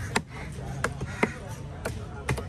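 Heavy knife chopping goliath grouper pieces on a wooden log chopping block, four sharp chops about half a second apart, with voices in the background.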